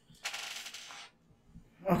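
A quick rattling burst of rapid clicks at a computer, lasting under a second.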